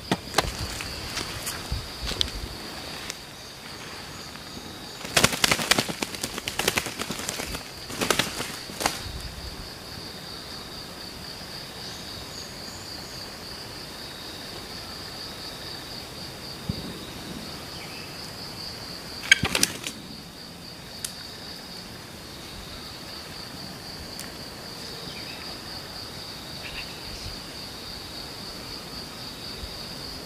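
Bursts of wing flapping from a wounded, shot junglefowl: one about five seconds in, another about eight seconds in and a short one near twenty seconds. A steady high insect drone runs underneath.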